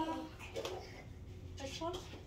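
Quiet room with faint voices: a voice trailing off at the start and a short, faint remark near the end.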